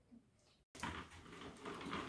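A moment of silence, then, from about two-thirds of a second in, a faint noisy rolling sound with light clicks from a toy pram's plastic wheels going over a tile floor.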